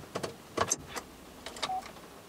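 A few short clicks and rustles of movement inside a car, over a steady hiss.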